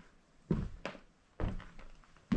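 Footsteps on a wooden plank floor: two heavy thudding steps about a second apart, each followed by a lighter knock.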